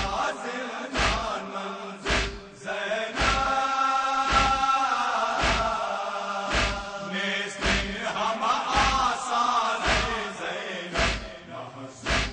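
Men's voices chanting an Urdu noha together, with a steady chest-beating (matam) thud in unison about once a second.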